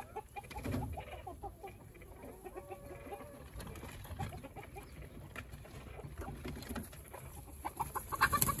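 Broody quail hen giving a string of soft clucks on her nest with a newly hatched chick, with a short held note about two and a half seconds in.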